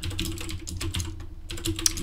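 Computer keyboard being typed on, a quick irregular run of key clicks as shell commands are entered, over a low steady hum.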